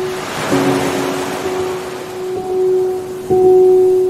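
Background film score of sustained, drawn-out synth notes, with a swell of airy whooshing noise near the start. A new, louder note comes in about three seconds in.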